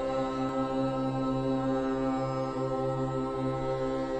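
Devotional intro music: a chanted mantra held as one steady low drone, without breaks.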